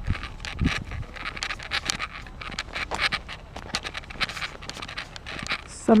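Footsteps crunching through packed snow, a quick irregular series of crunches.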